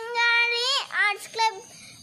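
A boy singing with long, level held notes, breaking off briefly partway through.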